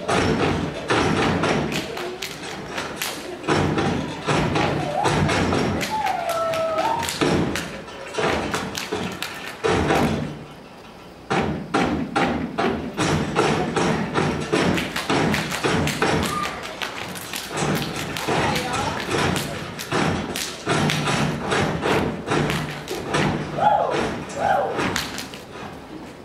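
A step team stepping on a stage: fast, rhythmic stomps and hits in a steady pattern, breaking off briefly about ten and a half seconds in before starting again.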